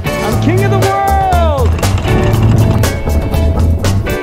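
Background music, with one pitched tone that rises briefly and then slides steeply down in pitch about a second in.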